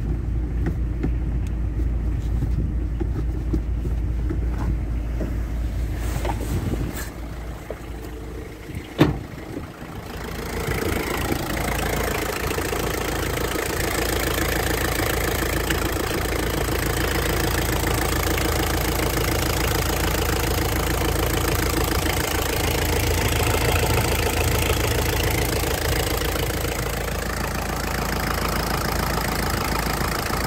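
Toyota 3C-TE 2.2-litre four-cylinder turbodiesel idling steadily. At first it is muffled, as heard from inside the car. After a single sharp knock about nine seconds in, it is louder and clearer from the open engine bay, with a fast, even beat.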